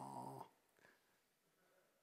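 A man's held vocal "oh" for about half a second, then near silence.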